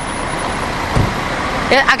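City street traffic noise, a steady hum of passing vehicles, with one dull low thump about a second in.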